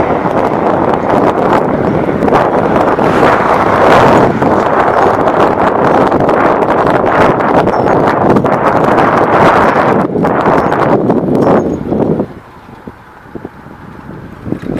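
Wind buffeting on the microphone of a camera filming from a moving vehicle, a loud steady rush that drops away sharply about twelve seconds in.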